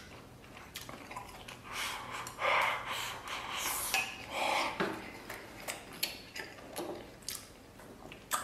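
Close-miked eating: chopsticks clicking against a rice bowl, with wet chewing and mouth noises from eating braised beef rib.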